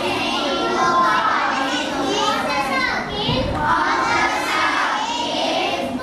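A class of schoolchildren calling out together, many overlapping voices at once with no break.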